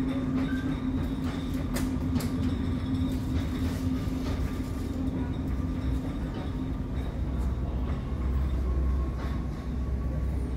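Steady low mechanical rumble with a droning hum, the machinery noise of an airport terminal. The hum fades about seven seconds in while the deep rumble grows stronger.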